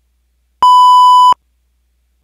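A single loud electronic beep: one steady 1 kHz tone lasting under a second, starting about half a second in and cutting off sharply.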